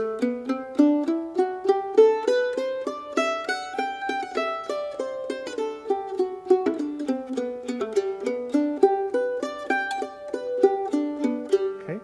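F-style mandolin played with a pick, one note at a time, running an easy scale slowly as a warm-up: the notes climb step by step to a peak about four seconds in, come back down, then rise and fall again.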